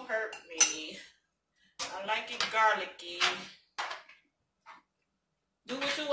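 A metal spoon clinking and scraping against a small seasoning jar and a frying pan as seasoning is spooned into the pan, with a few short sharp clinks. Wordless vocal sounds from the cook come in between.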